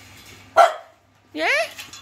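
A dog gives a single short, sharp bark about half a second in, the loudest sound here.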